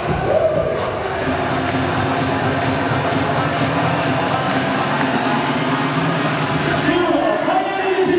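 Loud cheer music with a steady beat playing over an arena sound system, mixed with crowd voices cheering and chanting along.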